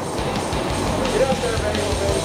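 Background music with voices under it, at a steady level.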